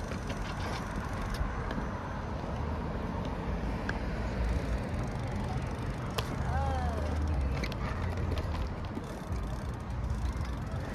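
Street traffic: a steady rumble of cars on the road alongside, with a few faint clicks in the first two seconds and one short squeak that rises and falls about two-thirds of the way through.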